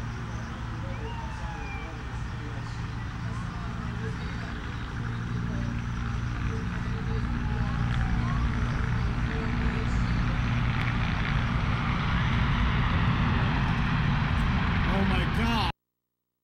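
Emergency-scene street noise: sirens sweeping up and down in pitch over a steady low engine drone and background voices, getting louder about halfway through. The sound cuts off abruptly just before the end.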